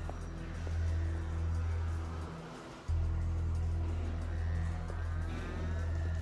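Arcade ambience: background music and electronic game-machine sounds over a steady low hum. The hum drops out briefly about two and a half seconds in.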